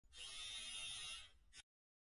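A faint, steady hissing noise for just over a second, fading out, then cutting to dead silence.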